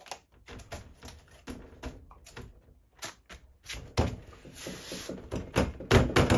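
A sheet of adhesive-backed sandpaper being laid onto a flat tile and pressed down by hand: scattered crackles and taps as the stiff sheet is handled, then from about four seconds a louder rubbing as palms sweep over the abrasive to smooth it flat.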